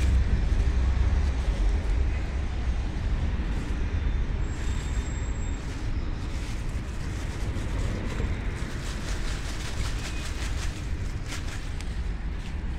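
Curly lettuce leaves rustling and snapping in short spells as they are picked by hand, over a steady low rumble.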